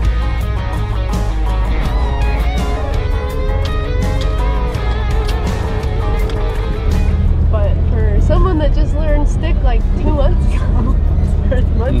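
Background music: a song with a singing voice over a steady bass, getting louder about seven seconds in.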